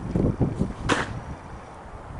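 Footsteps crunching on packed snow, with rumbling handling and wind noise on a hand-held phone's microphone and one short, sharp swish about a second in.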